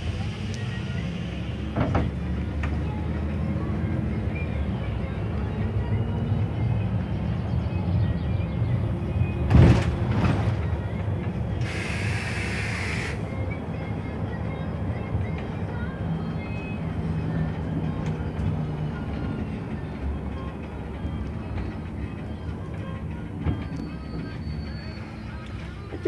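Inside a moving bus: a steady low engine and road rumble, with a sharp knock about ten seconds in and a short hiss of air a couple of seconds later.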